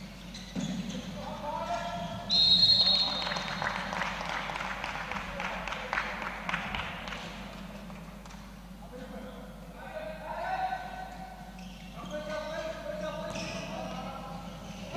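A referee's whistle sounds one steady blast of about a second, a little over two seconds in, the loudest sound here. Around it are the sounds of a handball game: the ball bouncing on the court and players calling out.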